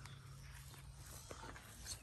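Nearly quiet background: a faint, steady low hum with a couple of soft clicks near the end.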